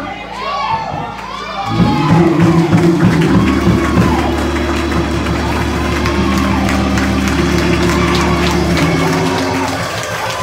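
Congregation voices calling out and singing in praise. About two seconds in, sustained held chords with a deep bass note join them and carry on until just before the end.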